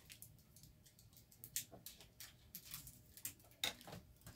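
Faint, irregular clicks and light rustling as scissors and small plastic packaging are handled.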